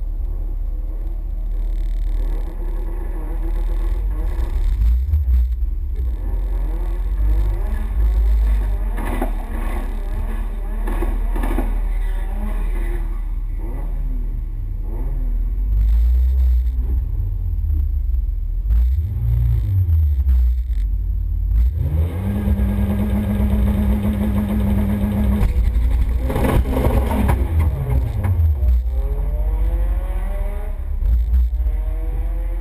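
Mini's four-cylinder engine heard from inside the stripped, bare-metal cabin, running at low revs with throttle blips that rise and fall. About twenty-two seconds in it is held at a steady raised rpm for a few seconds, then revved up and down again near the end.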